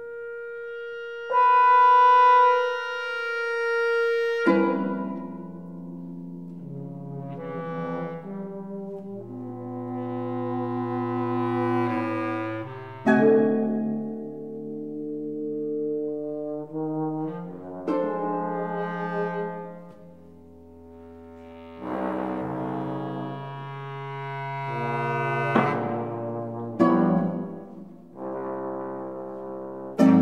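Chamber trio of bass trombone, bass clarinet and harp playing long held notes that overlap and shift, with sudden loud entries every few seconds. The loudest moment is a bright held note starting about a second in.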